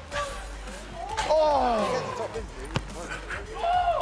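A football struck with one sharp thud past the middle. Before it, a voice gives a long falling exclamation.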